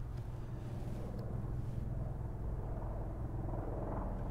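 A steady low background hum (room tone), with no distinct events.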